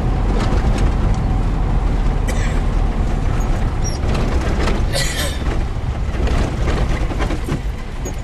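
Car's engine and tyres running over an unpaved dirt road, heard from inside the cabin: a steady low rumble, with two brief louder noises about two and five seconds in.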